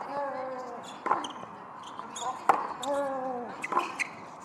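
Tennis rally on a hard court: the ball is struck by racket about every 1.3 seconds, four hits in all, alternating between the two players. After every other hit comes a drawn-out grunt from one player, falling in pitch.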